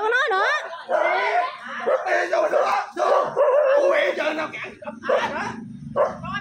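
Raised, overlapping voices in a heated argument, the pitch wavering and wailing, with no clear words.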